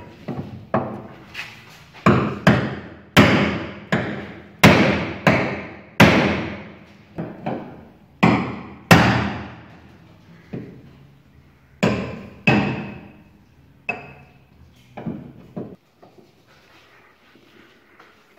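A string of about twenty sharp metal blows, each ringing briefly, as a steel bar beats out the rusty sheet-metal front wheel arch of a ZAZ-965 from under the wing. The arch is being straightened so the front wheel clears it at full steering lock. The blows come irregularly and stop near the end.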